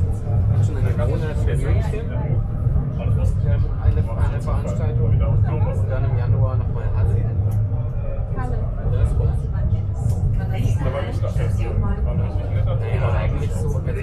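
Funicular car of the Heidelberg Bergbahn's lower section running along its track, a steady low rumble heard from inside the cabin, with passengers talking over it.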